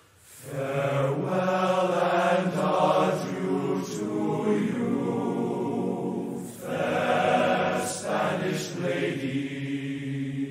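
Low voices singing a sea shanty in a slow, chant-like way, coming in about half a second in, with a short break about six and a half seconds in.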